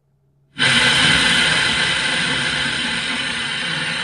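Car stereo FM tuner hissing with static on 89.7 MHz, with no station coming through. The sound is muted for about half a second as the radio retunes, then the steady hiss cuts in.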